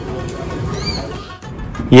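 Busy food-counter background: indistinct voices and kitchen noise, with a short high squeak just before one second in. The sound cuts off sharply about one and a half seconds in.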